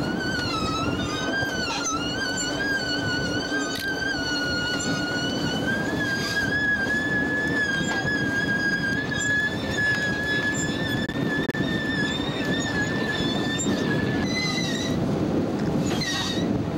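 A long, high whistle-like tone held for about fourteen seconds, wavering a little in pitch early on, then cutting off, with a couple of short high notes near the end, over a steady rushing noise.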